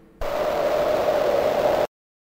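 A burst of hissing static with a steady hum-like tone running through it, lasting about a second and a half and cutting off suddenly.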